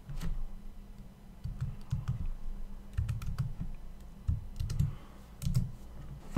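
Typing on a computer keyboard: irregular key strikes, each a short click with a dull thump, as a new file name is typed in.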